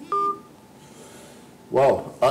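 A short electronic telephone beep over the phone-in line, a brief steady two-pitch tone about a tenth of a second in, followed by faint line hiss: the sign that the caller's call has dropped.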